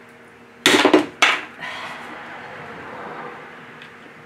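Tile nippers snapping a piece off a porcelain tile: a sharp crack about two-thirds of a second in, lasting a moment, then a second shorter click about half a second later.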